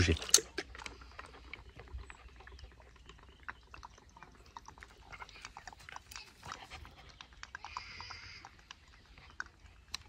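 Puppy panting softly, with scattered faint clicks and rustles.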